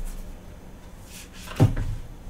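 Tarot cards being handled over a desk: a faint swish of cards, then one short, dull knock a little after one and a half seconds in.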